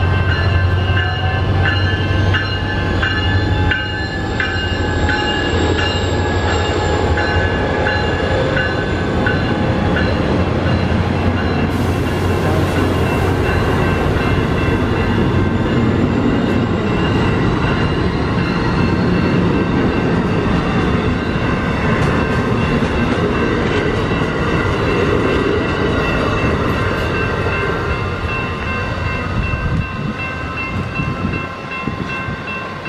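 Amtrak passenger train approaching and running past, a continuous loud rush of wheels on rail as the coaches go by.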